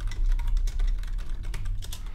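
Typing on a computer keyboard: a quick, uneven run of keystrokes as a line of code is entered.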